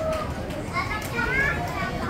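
Background chatter of many young children talking at once, with no single clear speaker.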